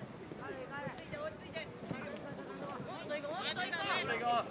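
High-pitched shouts and calls of young players across a football pitch, with a louder call near the end.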